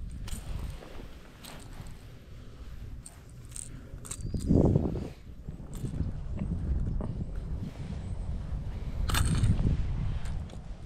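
Wind noise on the microphone and handling rustles while a caught bass is unhooked, with a louder rustle about halfway through and a short sharp click near the end.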